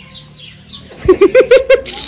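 Small birds chirping faintly. From about a second in, a loud rapid run of short pitched calls, each rising and falling, about six in under a second.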